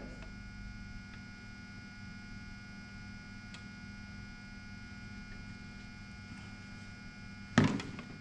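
Steady electrical hum made of several fixed tones. Near the end comes one loud thunk as a metal gallon paint can is set down on a wooden worktable.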